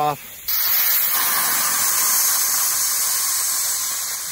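Compressed air hissing out of a small portable air compressor's tank as a pull-ring valve is held open to let the remaining pressure off. The hiss starts abruptly about half a second in and slowly weakens as the tank empties.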